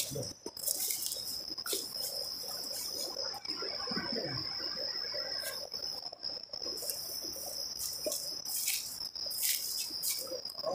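Insects chirring in a single steady, high-pitched tone, with brief rustles and knocks from movement through the undergrowth.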